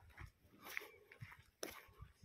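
Near silence with faint footsteps on dirt and gravel, about two steps a second.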